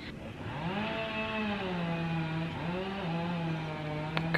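A motor engine running nearby, its pitch rising early on, dipping briefly, then holding steady. It is loud enough to drown out a voice.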